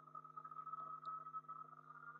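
A steady high-pitched electrical whine over a low steady hum, with faint uneven sounds beneath.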